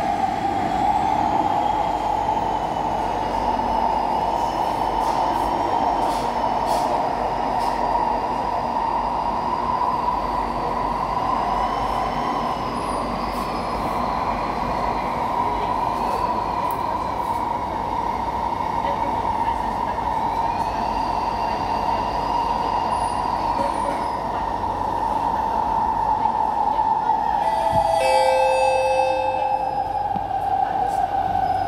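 Cabin of a Kawasaki–CRRC Sifang C151B metro car running through the tunnel: a steady rush of wheel and running noise, with a faint motor whine that rises and falls in pitch. A brief set of steady pitched tones sounds near the end.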